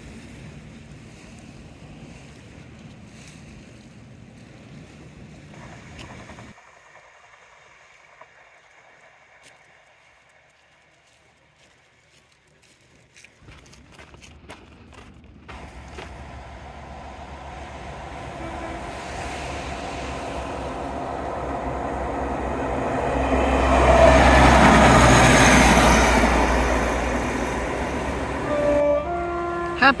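A diesel multiple-unit passenger train approaching along the seawall line, its engine rumble and wheel noise growing louder to pass close by about two-thirds of the way in, then easing away. Near the end it gives a short two-note horn toot.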